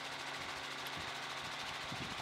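Helicopter engine and rotor noise heard from inside the cabin: a steady drone with a low hum.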